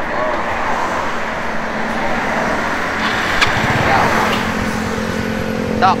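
Road traffic with a motor vehicle engine running close by; a steady low engine hum sets in about four to five seconds in.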